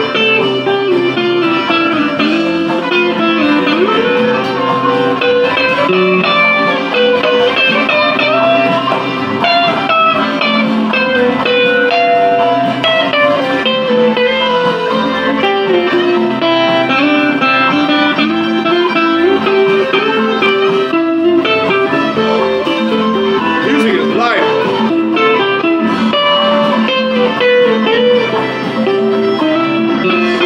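Electric guitar playing a long bluesy lead solo, with bent and sliding notes over steady sustained lower tones.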